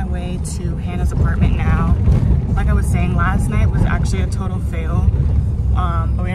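A woman talking inside a car's cabin over the steady low rumble of the car riding along.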